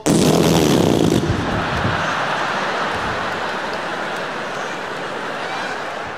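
A sudden loud, noisy burst, then a large arena audience laughing, the laughter slowly dying away over several seconds.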